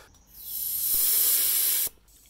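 Air hissing out of a Hummer H2 tyre through its valve as the pressure is let down a few psi. The hiss builds over about half a second, holds steady, then cuts off sharply near the end.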